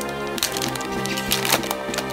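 Foil trading-card booster pack being torn open and crinkled, with a few sharp crackles in the second half, over background music.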